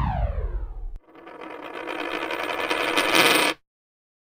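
Electronic sound effects: a steeply falling pitch sweep that stops about a second in, then a shimmering noise that swells in loudness and cuts off abruptly just before the end.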